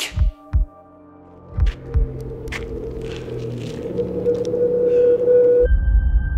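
Cinematic trailer score: two deep low thumps in quick succession, like a heartbeat, then two more about a second and a half in. A held tone then swells steadily louder and cuts off just before the end into a deep low rumble.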